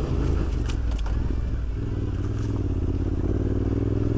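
Yamaha Ténéré 700's 689 cc parallel-twin engine pulling steadily at low revs as the bike climbs a dirt trail. It sounds gentle off the bottom end on its richened 13.2 air-fuel fuelling.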